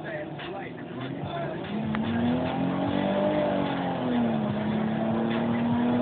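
Nissan Altima engine heard from inside the cabin, pulling hard under full-throttle acceleration: its pitch climbs, falls back about four seconds in, then holds and creeps up again.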